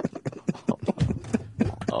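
Men laughing hard in quick, choppy bursts.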